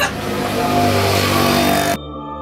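Motorcycle engine revving, its pitch climbing steadily.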